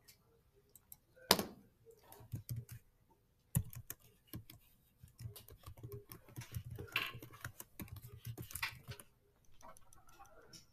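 Typing on a computer keyboard: a single sharp click about a second in, then a fast run of keystrokes from about three and a half seconds in until near the end.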